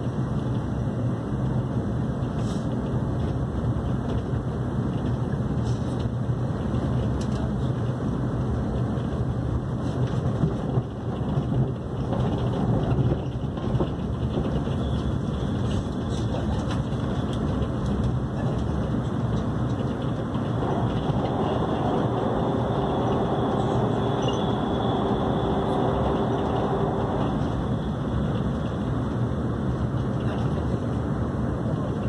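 Cabin running noise of an AREX express electric train, a Hyundai Rotem multiple unit, moving along the line: a steady low rumble of wheels on track heard through the carriage. A faint steady whine comes in for several seconds in the second half.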